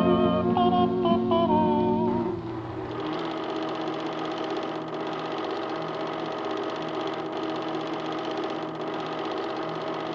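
The last notes of a song die away in the first two seconds or so. Then a home-movie film projector runs on its own with a steady mechanical whirr.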